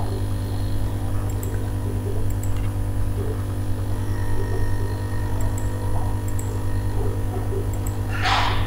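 Steady low electrical hum, mains hum picked up by the recording microphone, with a few faint clicks scattered through it.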